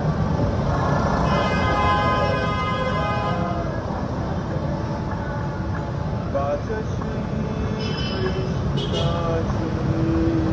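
City traffic passing on a wet road, with steady tyre and engine noise. A vehicle horn sounds for about two seconds near the start.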